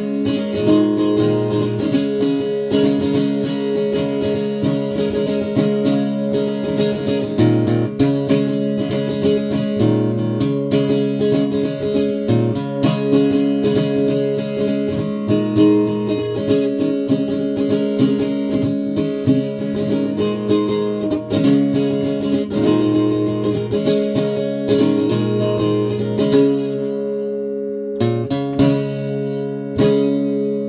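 Small acoustic guitar strummed steadily through a simple made-up chord pattern in G. It thins out near the end to a few strums left ringing.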